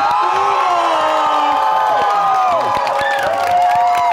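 A crowd cheering, with several voices holding long, high screams together that tail off near the end as clapping starts.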